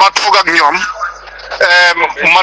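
Speech only: a voice talking with a radio-like sound, pausing briefly around the middle and drawing out one syllable near the end.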